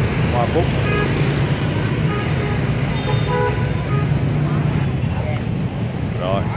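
Steady street traffic of passing motorbikes, with short horn toots about a second in and again around three seconds.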